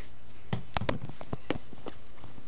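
Handling noise from a phone being moved about: a scatter of light clicks and knocks, about seven in under two seconds, over a steady hiss.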